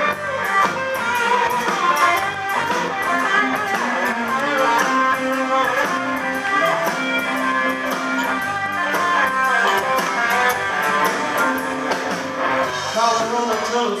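Live blues jam band playing an instrumental passage: electric guitars over bass guitar and drums.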